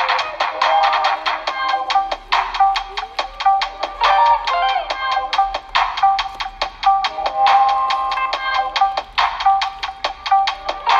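Background music: a quick melody of short, rapidly repeated notes.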